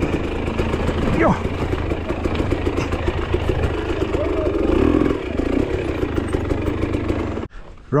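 Enduro motorcycle engine running at low speed on a rocky downhill trail, heard from on the bike, with a steady rumble and rattle. The sound cuts off suddenly near the end.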